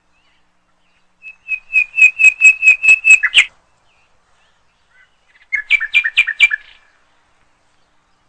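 A bird singing two short phrases of quick repeated chirps, the first about two seconds long and ending on a higher note, the second about a second long after a short pause.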